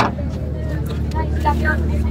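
Outdoor background with a steady low hum and faint distant voices.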